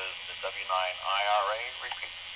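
A ham radio repeater's automated voice identification heard through a radio's speaker: a thin, narrow-band voice over a steady hiss of radio noise.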